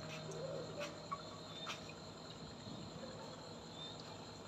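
Faint steady background hum and hiss, with a few soft clicks in the first two seconds.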